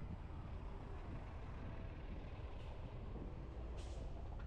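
Steady low rumble of a car driving in traffic, with a short hiss near the end from the air brakes of a city transit bus alongside.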